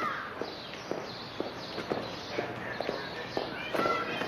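Footsteps on a hard surface: short sharp steps, roughly two a second, over a steady background noise.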